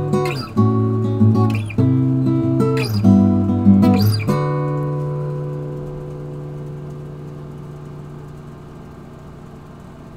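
Acoustic guitar music: strummed chords about a second apart, the last one, a little over four seconds in, left ringing and slowly fading away.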